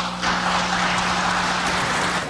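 A roomful of people applauding, dense steady clapping that starts abruptly.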